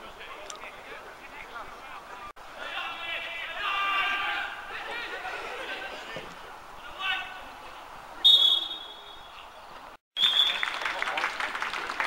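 Players' distant shouts across an open pitch, then a referee's whistle: one blast of about half a second a little past two-thirds of the way through, and a shorter blast near the end, the final whistle of the match.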